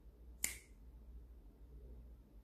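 A single finger snap about half a second in, sharp and quickly fading, over a low steady hum.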